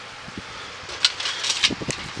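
Galaxy box fan running, its blades moving air with a steady rush. In the second half several sharp clicks and knocks from handling come over it.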